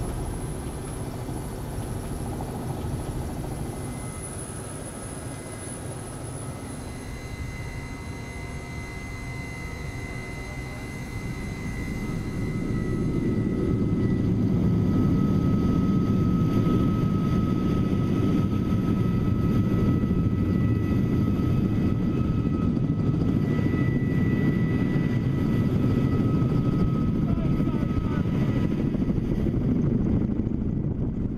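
Helicopter running close by: a steady rotor and engine noise with a high turbine whine, growing louder about thirteen seconds in.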